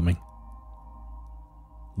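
Quiet ambient background music: a few steady held tones forming a low, unchanging drone.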